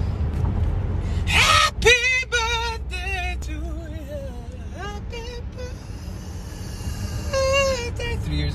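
A woman singing wordless phrases with a wavering vibrato, unaccompanied, over the low steady rumble of a car cabin.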